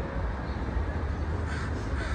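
A bird calling near the end, short calls about half a second apart, over a steady low rumble.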